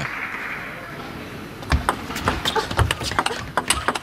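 Table tennis rally: a celluloid-type ball clicking sharply off bats and table in quick, irregular succession, starting a little under two seconds in, with a few low thuds of footwork. A soft hum of the arena crowd sits underneath.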